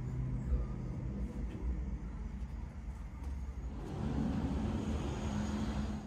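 A motor vehicle's engine running as a steady low hum, growing louder about four seconds in.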